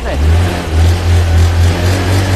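Honda Air Blade 110 FI scooter engine running, with a strong, steady low beat. This is the taut 'piston' note that the seller takes as the sign of an original, unopened engine.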